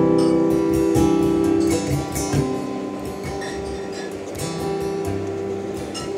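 Steel-string acoustic guitar played solo in an instrumental gap between sung lines: a few chords strummed and left to ring, growing quieter through the middle before picking up again toward the end.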